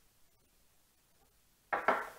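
Near silence: room tone. Near the end comes a short murmur of a man's voice.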